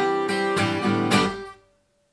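Vintage Aria 12-string acoustic guitar (model 9254, solid spruce top) strummed, its chords ringing, with a last strum about a second in. The sound then dies away suddenly, leaving silence near the end.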